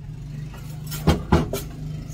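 A steady low electrical hum from a running appliance motor, with two sharp knocks about a quarter of a second apart just over a second in.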